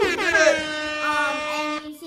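A child's voice singing out one long held note, steady for about a second and a half before it stops near the end.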